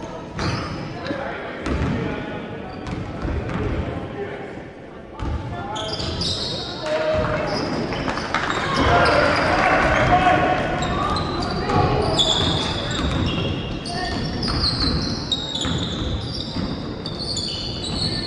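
A ball bouncing on a hardwood court in a large, echoing sports hall, with players' and spectators' voices. From about six seconds in, shoes squeak in short high chirps on the floor.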